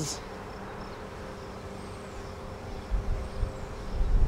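A steady low droning hum with a few even tones, with short low rumbles about three seconds in.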